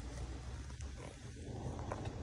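Labradoodle puppy making soft, low sounds over a steady low rumble.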